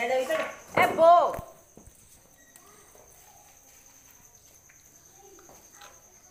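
A young buffalo calf bawling once, loudly, rising and then falling in pitch about a second in, as it is held and dosed with mustard oil for constipation.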